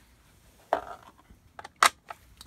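Small steel hand tools, a tap driver and tap wrench, being handled: a short metal scrape about two-thirds of a second in, then a few light clicks and one sharp click near the end.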